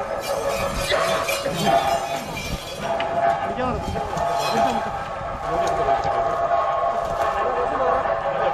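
Theyyam accompaniment: a reed instrument, likely the kuzhal, sustains steady held tones, with people talking in the crowd underneath.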